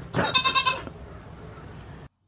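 A goat bleats once near the start, a single pitched call about half a second long.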